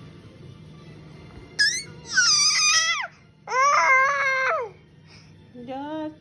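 An infant crying out in two loud, high-pitched squeals: the first slides down in pitch, the second is a held 'aah' of about a second that drops at its end.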